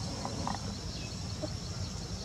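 Outdoor ambience: a steady high insect drone over a low rumbling noise, with a couple of faint short sounds about half a second in.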